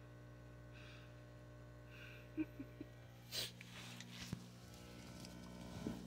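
Faint steady low hum of an aquarium filter, with a few soft small clicks and a brief breathy rustle midway.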